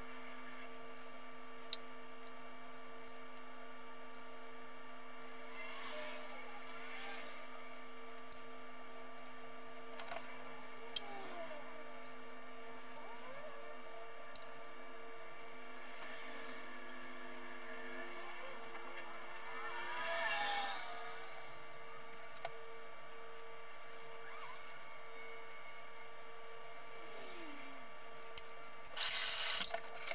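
Merkur 34C safety razor with a Concord blade scraping through shave butter on a stubbled scalp in slow, faint strokes with scattered light clicks, the blade tugging on the stubble. A steady low hum runs underneath, and a towel rubs over the face near the end.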